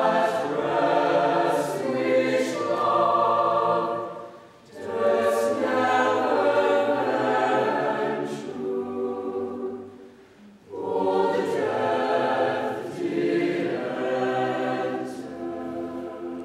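A mixed-voice chamber choir singing a choral piece in three phrases, with a short break for breath about four and a half and about ten seconds in.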